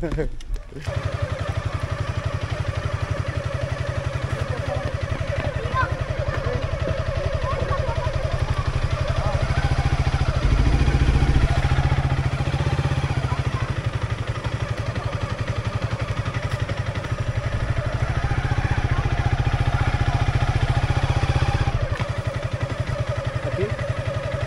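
Motorcycle engine starts running about a second in, then runs at low revs as the bike rolls slowly. It swells briefly just after the middle.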